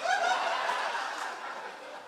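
Laughter from a crowd, dying away gradually over two seconds.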